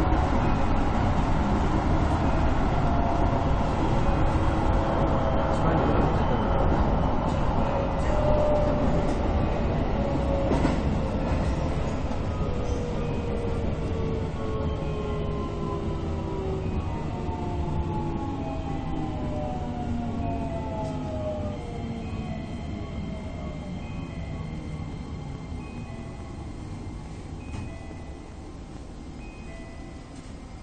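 Keisei 3050-series electric train braking into a station: rumbling running noise with a whine of several tones sliding steadily down in pitch as it slows, fading away as it comes to a stop near the end.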